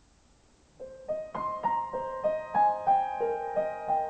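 Solo grand piano beginning the slow melody of a bolero about a second in, notes struck one after another about three a second and left ringing over each other.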